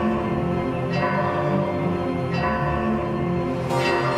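Slow instrumental music of sustained chords, a new chord coming in about every second and a half.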